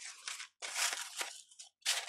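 Stiff card samples being handled and slid against one another. It comes as a few short papery scrapes and rustles, the longest about half a second in.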